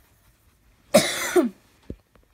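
A person coughs once, about a second in: a loud, harsh burst lasting about half a second. A brief low thump follows near the end.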